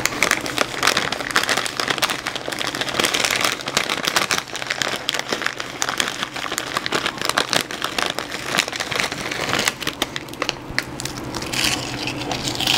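A crinkly chip bag being handled and chips being eaten, heard close up as a dense run of crackles and rustles with crunching. It eases off briefly near the end, then picks up again.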